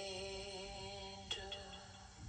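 A single voice chanting a Tibetan Buddhist tsok (feast-offering) song in long held syllables, with a new syllable starting a little over a second in and the voice fading near the end.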